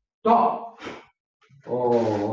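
Two short vocal sounds, breathy and sigh-like: a brief higher-pitched one just after the start, then a longer, lower held vowel near the end.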